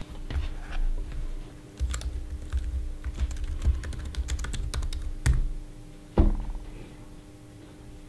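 Typing on an Apple MacBook laptop keyboard: a quick run of key taps, then two louder single taps about five and six seconds in.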